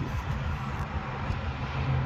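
A steady low rumble of outdoor background noise with a faint constant hum underneath. No distinct event stands out.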